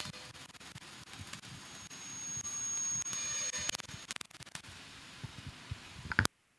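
Soundtrack of an animated title sequence: a hissing, static-like noise bed with scattered clicks and faint held tones. A thin high steady whistle swells in about two seconds in and stops near the four-second mark.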